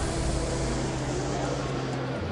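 Exhibition-hall background: indistinct crowd voices over a steady low hum.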